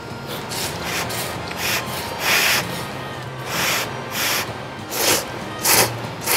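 Thick, chewy ramen noodles slurped in a run of about eight short, loud sucking hisses, the loudest about two seconds in.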